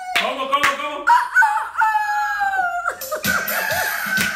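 A rooster crowing and clucking, one long held crow in the middle, as part of an animal-sounds children's song, with a few hand claps.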